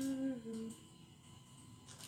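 A person humming a short tune in a few held notes, breaking off less than a second in. After that it is quiet, with a faint click near the end.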